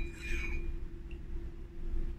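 Quiet room tone with a steady low hum. A thin high ring from a metal spoon tapping the ceramic cup fades out in the first half second, and there is one faint tick about a second in.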